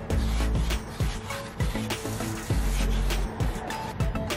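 Background music with a steady beat, deep held bass notes and a light melody.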